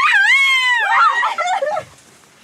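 A person's very high-pitched wailing voice, gliding up and down in long drawn-out cries that break off near the end.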